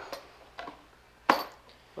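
A single sharp knock about a second in, as a small boxed suspension part is set down on the car's steel hood. A faint steady hum runs underneath.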